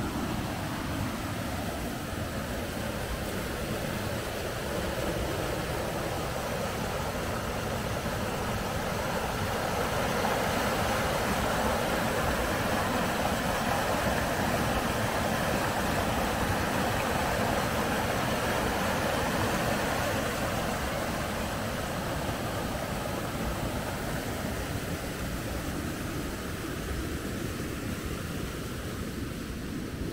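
River water rushing over rocks in churning whitewater, a steady rushing noise that grows louder in the middle and eases off near the end.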